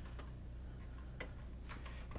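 Three faint clicks as hands handle wires against the plastic printer base, over a steady low hum.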